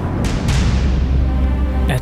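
Background music score: a steady low drone, with two soft hits in the first half second that fade away.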